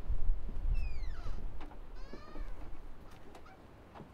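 A cat meowing twice, about a second in and again about two seconds in, the first call sliding down in pitch.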